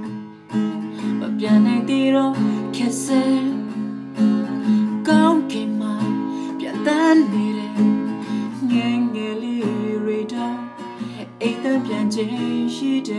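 A man singing a Burmese-language song while strumming an acoustic guitar.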